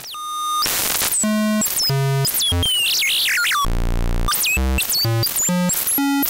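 Buzzy synthesized square-wave tone from Bitwig's Parseq-8 step modulator run at audio rate, two steps flipping a DC offset up and down. Its pitch jumps from note to note every fraction of a second as the rate knob is turned, dropping to a low buzz near the middle.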